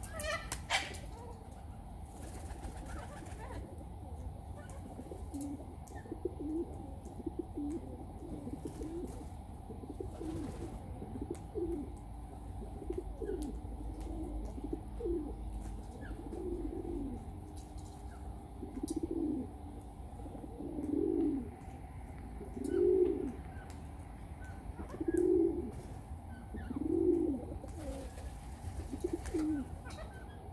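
A dove cooing: soft, low calls that fall into a regular pattern, about one every two seconds, in the second half. A brief higher bird call sounds about half a second in.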